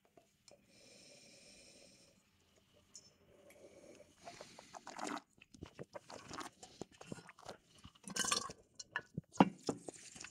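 Wine tasting mouth and nose sounds: a faint sniff at the glass of red wine, then wet mouth sounds of the wine being tasted and worked in the mouth, with many small clicks and a louder slurping burst about eight seconds in.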